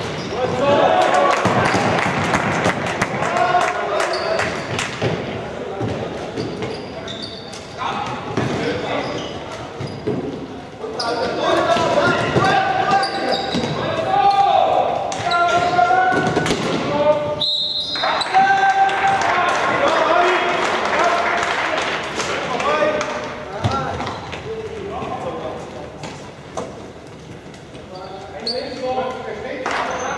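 Floorball game in an echoing sports hall: a steady patter of sharp clicks and knocks from sticks and the plastic ball, with players' shouts and calls throughout.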